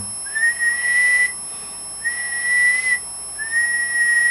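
A person whistling three steady notes, each about a second long and each sliding up a little at the start, into a CB radio microphone to drive the transmitter and a Lafayette HA-250A tube amplifier for a power reading.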